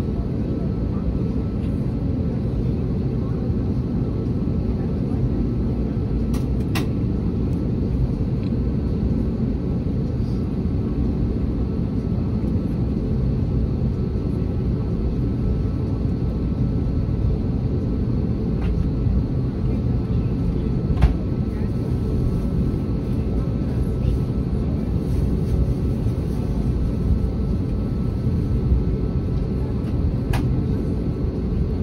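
Airliner cabin noise: a steady, loud low rumble of the jet engines and airflow, with a few light clicks.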